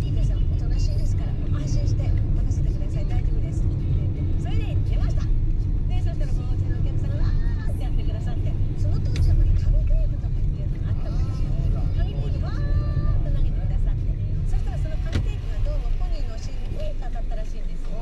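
Steady low rumble of a car's engine and tyres heard from inside the cabin while driving, with faint voices in the background.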